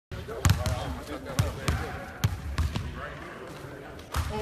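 Basketballs bouncing on a hardwood gym floor as players dribble: several sharp thuds at uneven intervals, thinning out in the last second.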